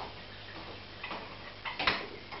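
Aquarium water and filter: scattered irregular clicks and small splashes of water at the surface, with a sharper cluster of clicks near the end, over a low steady hum.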